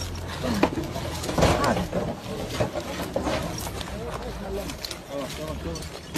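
Broken concrete and stones clicking and scraping as rescuers clear rubble by hand from around a trapped dog, with scattered short knocks. Low, indistinct voices and a steady low hum sit underneath.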